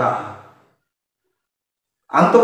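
A man's voice trails off in the first half second, then the sound drops to complete, dead silence for the rest.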